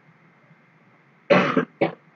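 A person coughing close to the microphone: a short, sudden cough past the middle, then a second, shorter one near the end.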